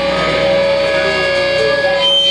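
Amplified electric guitars and bass in a live metal band holding sustained, droning notes, with no drums.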